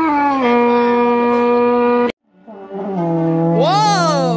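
A beginner blowing a trumpet: a held note that drops a step about half a second in and cuts off suddenly about two seconds in. After a brief silence a baritone horn sounds a lower held note, with a tone that rises and falls in pitch above it near the end.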